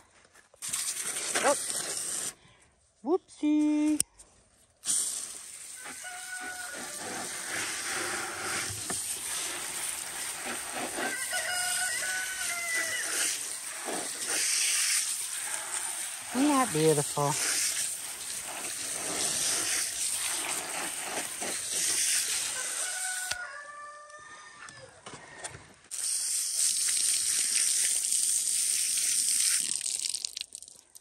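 Garden hose pistol-grip spray nozzle spraying water onto freshly dug sweet potatoes in a plastic tub, a steady hiss of spray with short breaks, one of a few seconds about three quarters of the way through.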